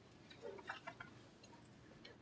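Near silence: room tone, with a few faint ticks about half a second to a second in.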